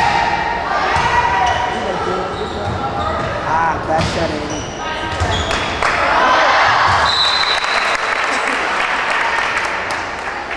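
Volleyball rally in a large gym: sharp hits of the ball, short sneaker squeaks on the hardwood floor, and spectators' voices and shouts, swelling about six seconds in.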